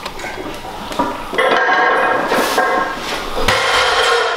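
Metal clanking and ringing of weight plates and a barbell in a gym, with a sharp knock near the end.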